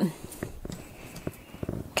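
Wet hands patting and pressing a soft teff sourdough dough flat in a plastic tub: a few faint, soft taps.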